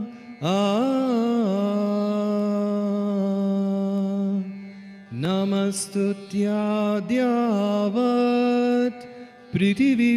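Sanskrit devotional chant sung with long held notes, each sliding up into its pitch before holding steady, with brief breaks about four and a half and nine seconds in.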